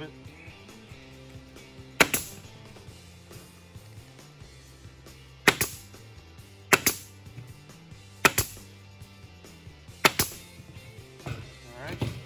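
Pneumatic staple gun firing half-inch staples through wire mesh into a wooden frame: five sharp shots, each a quick double crack, spaced one to three seconds apart.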